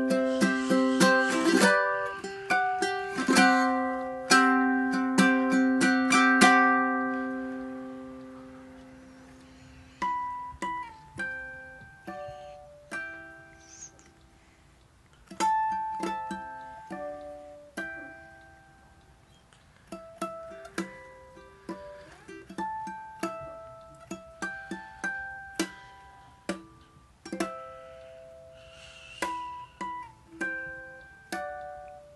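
Enya ukulele played fingerstyle: a run of loud strummed chords that ring out about eight seconds in, then slow, sparse single plucked notes, played softly.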